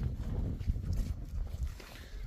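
Low rumble of wind buffeting the microphone, with irregular footsteps on dry dirt as the recordist walks.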